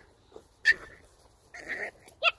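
A puppy giving two short whimpering cries, one about a second in and a longer, rougher one near the end, balking at being led on a leash for the first time.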